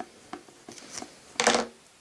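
Small clicks and scrapes of hard plastic toy parts being handled and taken apart, with one louder rustling scrape about one and a half seconds in.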